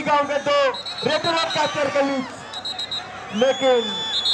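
A man's voice on loudspeaker commentary, with high whistle blasts over it: a short one about a second in, another near the middle, and a long whistle that rises in pitch and then holds steady near the end.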